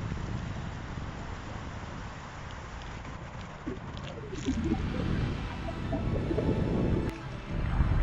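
Wind buffeting a phone microphone: a low rumble that swells a little after about five seconds and dips briefly near the end, with a few faint short tones mixed in.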